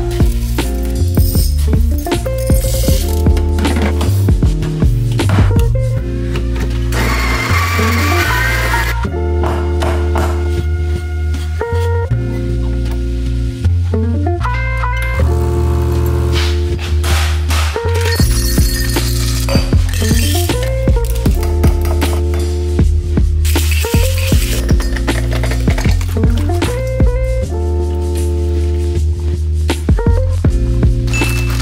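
Background music with a steady bass line moving from note to note.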